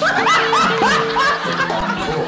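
Laughter, about five quick laughs in the first second, over background music.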